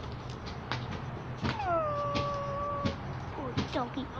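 A dog howling: one long call that slides down and then holds steady for about a second, followed near the end by a few short rising whimpers.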